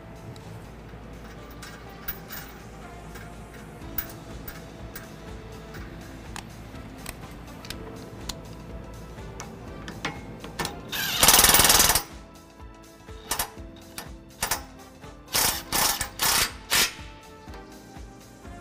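Impact wrench with an 18 mm socket running a hitch bolt in: one long loud burst of rapid hammering about eleven seconds in, then several short bursts near the end as the bolt snugs down. Background music plays underneath.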